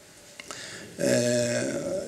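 A man's voice holding a flat hesitation sound, one drawn-out 'eh' of about half a second starting about a second in, after a short pause in his talk.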